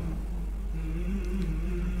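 Quiet background music bed: a low, steady drone, with a faint higher layer coming in just under a second in.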